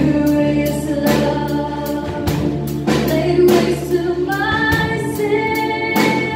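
Live worship band playing a contemporary gospel song: a woman sings the lead over drum kit, guitar and keyboard, with held, sliding vocal notes and a steady drum beat.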